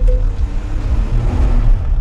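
Inside a moving car's cabin: a steady low engine and road rumble as the car drives slowly.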